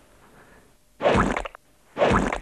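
A wet, squelching splat sound effect about a second in, lasting about half a second, accompanying a cartoon paint-splat logo transition. A second splat starts right at the end.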